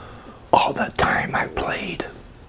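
A man whispering a few words close to the microphone, starting about half a second in.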